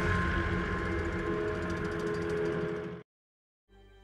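Tank engines and tracks of a moving armoured column running under a steady music bed, cutting off abruptly about three seconds in. After a brief silence, quieter music begins near the end.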